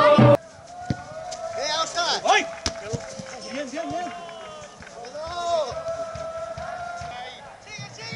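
Background music cuts off abruptly just after the start. Then come shouts and calls of players on a football pitch, with a few sharp knocks of the ball being kicked, the loudest about a second and two and a half seconds in.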